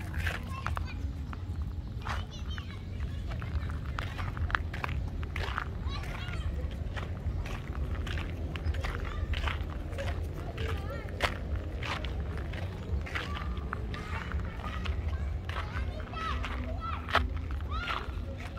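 Footsteps crunching on gravel in an irregular walking rhythm, over a steady low rumble.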